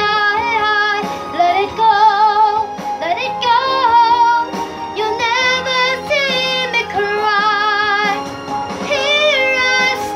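A woman singing a sustained ballad melody with marked vibrato and long held notes, over a steady sustained accompaniment.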